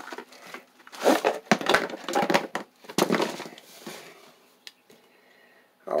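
Packaging crinkling and rustling as a small camp lantern is slid out of its cardboard box and plastic wrapping. It comes in a few irregular bursts over the first three seconds, then dies down to faint handling.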